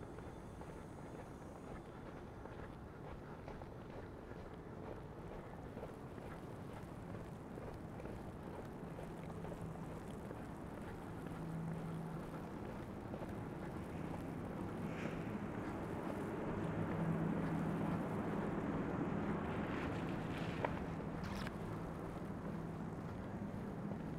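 Quiet city street ambience: a steady low rumble of distant traffic, with a low engine-like hum that comes in partway through, swells about two-thirds of the way in, and eases off again.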